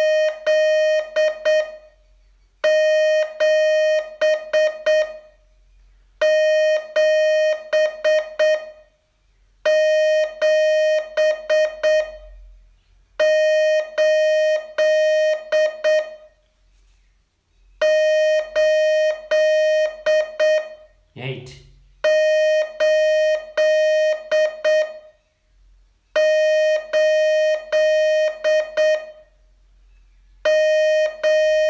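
Morse code practice sent as a steady beeping tone. It comes in groups of a long tone followed by several short beeps, each group about two and a half seconds long and repeating roughly every three and a half seconds with short pauses between.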